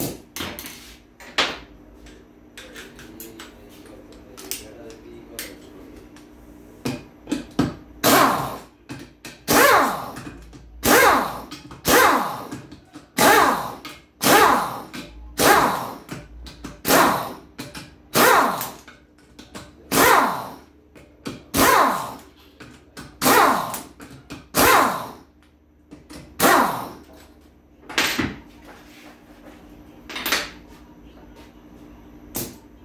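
Pneumatic impact wrench loosening the pump bolts on a six-speed automatic transmission case, one bolt after another: after a few light clicks, a run of short loud hammering bursts about every one and a half seconds, each trailing off in pitch, over a faint steady hum.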